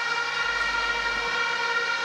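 A steady drone of several held tones at once, unchanging in pitch.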